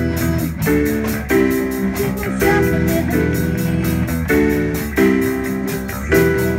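Live rock band playing an instrumental passage on drum kit, electric guitar, bass guitar and keyboard. Chords change every half-second or so over a steady beat with regular cymbal strokes.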